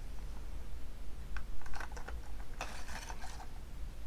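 Small plastic clicks and rustling as a cosmetic gel tube and its packaging are handled and opened: a few scattered clicks, then a denser run of clicking and rustle about two and a half seconds in.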